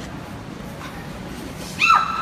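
A dog begins a high, steady whine near the end, its pitch dropping sharply at the start and then holding.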